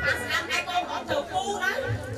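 Speech only: a woman talking into a microphone, with others chattering.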